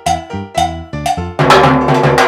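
Stick-struck LP cowbell mounted on timbales, played in a steady pattern of about four ringing strokes a second. About one and a half seconds in it breaks into a louder, busier run of strokes.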